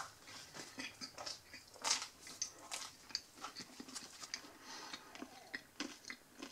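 Someone chewing a mouthful of crusty baguette and creamy meat salad close to the microphone, with soft, irregular crunches and mouth sounds.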